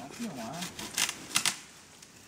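Two short, dry crackles about half a second apart, about a second in: twigs and branches snapping and rustling in forest undergrowth.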